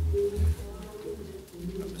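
Pages of a Bible being turned and handled at a wooden pulpit. Low thumps of handling reach the microphone in the first half second, then a faint low tone is heard twice.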